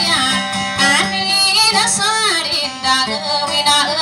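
A woman sings dayunday, the Maranao sung form, to her own acoustic guitar. Her long sung notes waver and slide in pitch over the plucked and strummed chords.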